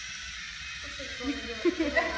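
Low steady room noise, then indistinct voices murmuring from about a second in, with a couple of small knocks near the end.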